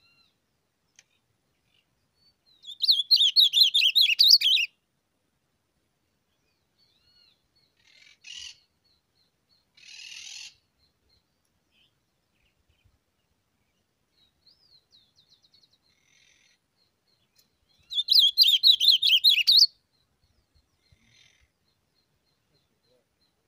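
Songbird singing from a trap cage: two loud bursts of rapid, high warbling notes, each about two seconds long, one a few seconds in and one near the end. Quieter short calls and faint chirps come in between.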